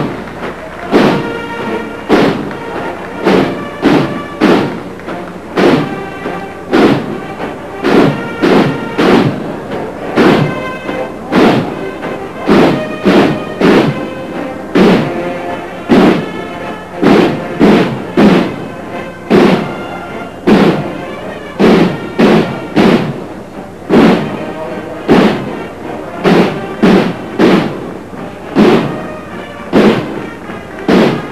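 Military band playing a march, with a heavy, regular drum beat under pitched notes.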